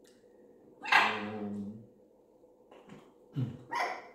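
A loud bark-like animal call about a second in, lasting about a second, followed by two shorter, quieter calls near the end.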